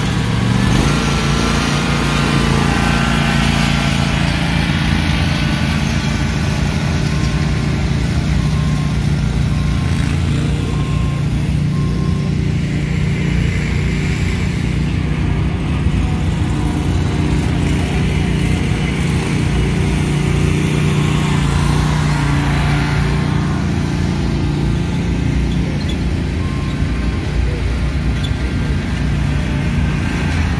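Zero-turn riding mower engines running steadily as the mowers are driven.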